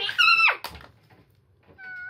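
A child's short, high-pitched squeal, about half a second long, that drops sharply in pitch at its end, followed by a click. A brief, fainter, steady-pitched call comes near the end.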